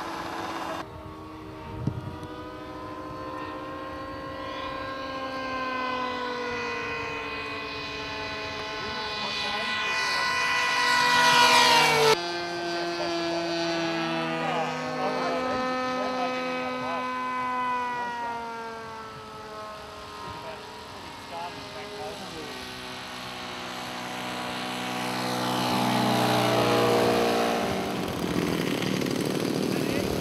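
Engines of O.S.-powered radio-control model airplanes in flight. The note rises and falls in pitch as each plane passes, and is loudest near twelve seconds and again around twenty-six seconds. The sound changes abruptly about a second in and about twelve seconds in.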